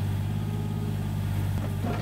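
Takeuchi mini excavator's diesel engine running steadily while it digs and grades soil, a low, even hum.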